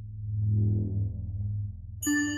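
Low synthesizer drone of a logo intro jingle, swelling up in the first half-second and then holding steady.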